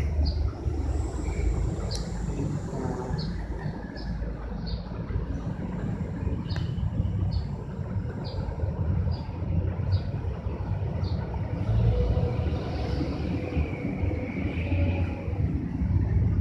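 Marker pen squeaking in short strokes on a whiteboard, a squeak about every half second to second, over a steady low rumble.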